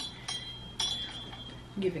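Three light metallic clinks within the first second, each followed by a brief high ring, as of a small metal object being knocked.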